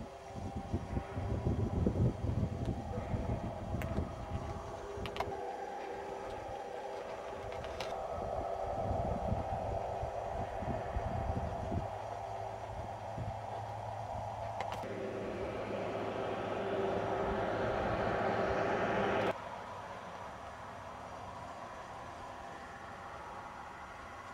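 Engine and tyre noise of a road vehicle, steady and then growing louder, that cuts off abruptly about three-quarters of the way through. Low rumbling buffets on the microphone in the first few seconds.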